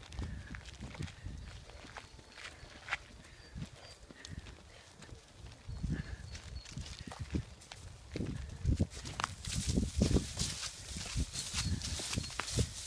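Footsteps of people walking, which turn in the last few seconds into the crackling crunch of dry fallen leaves underfoot.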